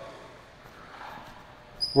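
Quiet pause in a gymnasium: faint room tone, with a brief high squeak just before the end.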